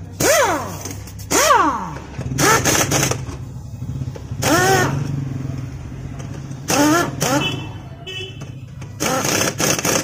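Pneumatic impact wrench run in six short trigger bursts on a scooter's rear wheel nut, each burst a hiss of air with a motor whine that rises and falls. A steady low hum runs underneath.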